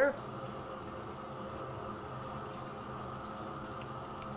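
A steady low hum with a faint higher whine held underneath, unchanging, with no distinct knocks or events.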